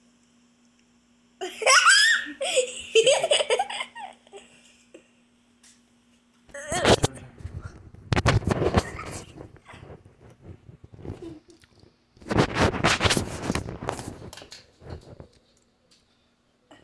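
High-pitched laughter lasting a couple of seconds, followed by three spells of rustling and knocking at the microphone.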